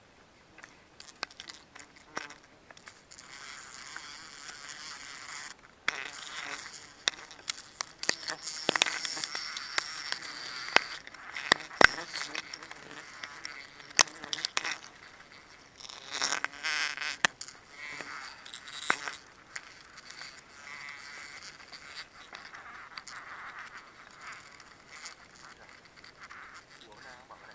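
Plastic bags and a thin plastic bottle crinkling and crackling as gloved hands handle them, with scattered sharp clicks; the sharpest click comes about twelve seconds in.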